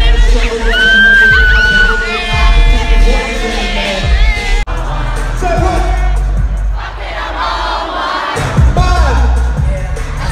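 Loud live concert music with heavy bass, heard from within an arena crowd that is singing and shouting along. The sound breaks off abruptly about halfway through at an edit cut and picks up again mid-song.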